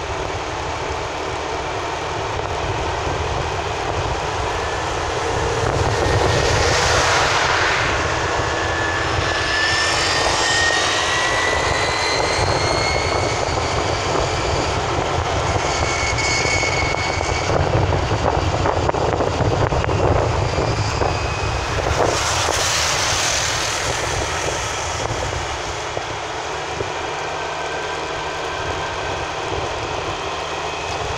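Road and engine noise of a moving car heard from inside the cabin: a steady rush with a low rumble, swelling louder twice, about seven and twenty-two seconds in. A faint rising whine comes through around ten seconds in.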